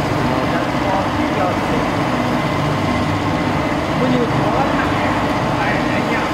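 Energy Storm amusement ride running, its drive machinery giving a steady mechanical hum with a low pulse as the arms spin the empty seat gondolas. Voices talk over it.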